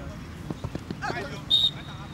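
A referee's whistle blown once, briefly, about one and a half seconds in. Before it come a few dull knocks and a brief shout.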